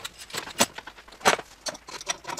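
Metal clinks and knocks as a corrugated gas connector line is handled and set down on the floor and its fitting is worked loose at the shutoff valve: a few sharp, separate knocks, the loudest a little past halfway.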